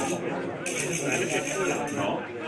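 Men chatting, with words too indistinct to make out, and a high hiss for just over a second in the middle.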